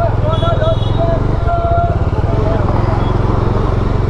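Motorcycle engine running steadily at low revs under way, heard from the rider's seat. Over it, a person's voice calls out during the first couple of seconds.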